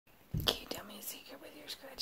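Soft whispering, a secret being told in a whisper, with a low bump on the microphone about a third of a second in.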